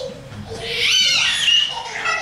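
A toddler's high-pitched squeal, one drawn-out cry of about a second that rises and then falls in pitch.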